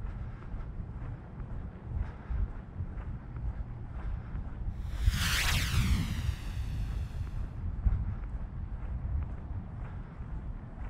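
Wind rumbling on the microphone, with a vehicle passing by at about five seconds in: a rushing hiss that swells and fades over two or three seconds.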